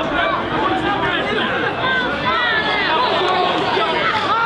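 Many voices talking and calling over one another: football crowd chatter mixed with shouts near the pitch.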